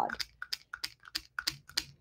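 A run of light, irregular taps, about five a second, as a Wink of Stella glitter brush pen is dabbed on cardstock.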